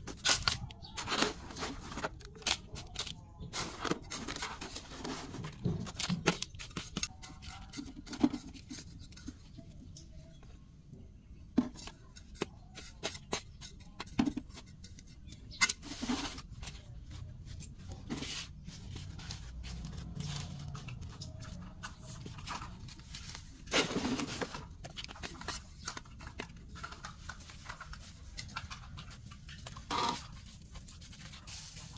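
Scattered clicks, scrapes and rustles of hands working loose potting soil and handling a plastic plant pot, with a longer scraping rustle about three-quarters of the way through.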